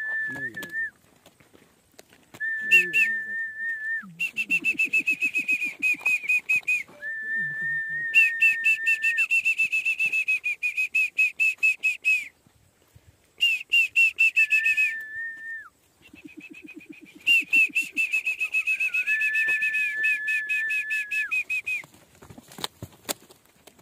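A person whistling over and over: long level notes alternating with higher, fast-warbling trills, with a few short pauses.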